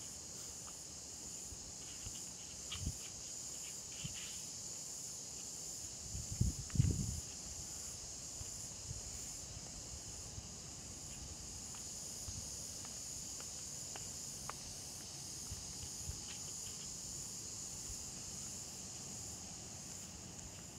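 Insects buzzing steadily at a high pitch, a continuous chorus from the garden vegetation. A few low thumps, the loudest about six to seven seconds in.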